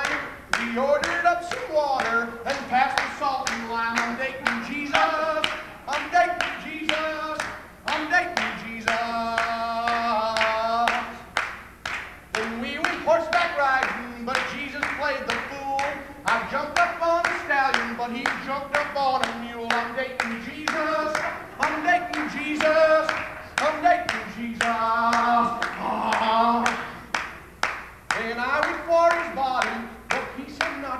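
A man singing a gospel-style song unaccompanied, with long held notes, over steady rhythmic hand clapping that keeps the beat.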